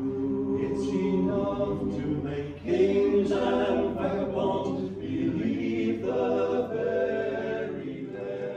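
A male a cappella group of five voices singing in harmony, unaccompanied, in phrases of two to three seconds with a short break between each.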